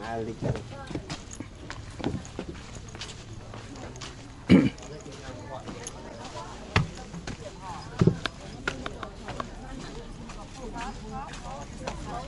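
Voices of people talking in the background, with a few irregular thumps, the loudest about four and a half seconds in.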